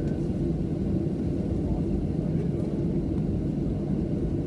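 Steady low rumble inside the cabin of a WestJet Boeing 737 taxiing after landing: engine and rolling noise at low thrust.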